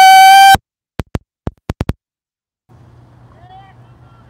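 A loud, drawn-out shout of "cheese" for a photo, held on one high pitch and cut off about half a second in. Then about two seconds of dead silence broken by six sharp clicks, before faint low background noise returns.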